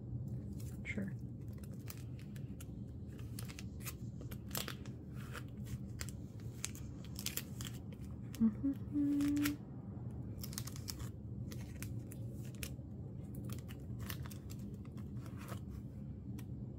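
Clear plastic binder sleeves crinkling and rustling as photocards are slid out of and pushed into the pockets, a run of short scratchy crackles. About halfway through, a brief steady low tone, held for about a second, is the loudest sound.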